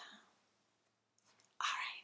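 A woman breathing out hard and breathily while stretching: a short faint breath at the start, then a louder, longer exhale near the end.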